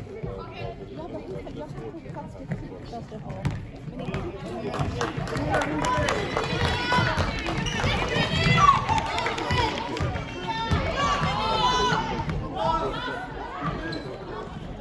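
Players and courtside spectators calling and shouting over one another during a youth basketball game in a sports hall, the voices swelling from about four seconds in. A few sharp knocks sound in the first seconds.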